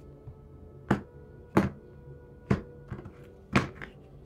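A deck of tarot cards knocked against a tabletop: about six short, sharp thunks at uneven intervals, with soft background music underneath.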